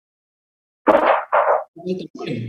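Indistinct voice cutting in from dead silence about a second in, over a videoconference line: two loud syllable-like pulses, then a shorter one. It is a participant who has left a microphone open.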